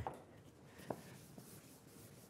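Faint rubbing of a cloth or sponge wiping a chalkboard, with a light tap about a second in.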